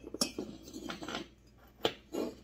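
A bare Stihl MS880 chainsaw cylinder being handled and turned over on a workbench: metal clinks and scrapes, with a sharp knock near the end.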